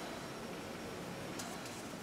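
Faint steady hiss of room tone, with a few soft ticks about one and a half seconds in.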